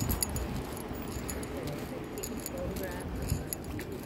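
Walking outdoors with a phone in hand: a light metallic jingling repeats through the steps, with faint voices in the distance.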